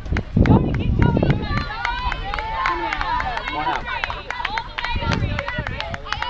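Overlapping shouts and calls from several voices across an open field, with many sharp clicks and low rumbling gusts of wind on the microphone near the start and again around five seconds in.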